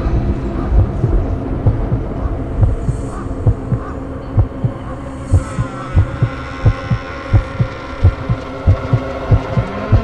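Dark horror-style sound design: low heartbeat-like thumps that come faster and faster over a steady droning hum. Near the end a tone begins to rise.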